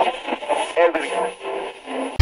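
A voice speaking as if through a radio, thin and tinny, over faint static hiss, with a steady high-pitched whine.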